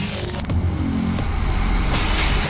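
Film soundtrack: a low, steady drone under a noisy hiss, with a sharp click about half a second in.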